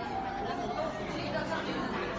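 Steady, indistinct chatter of many diners talking at once in a restaurant dining room, with no single voice standing out.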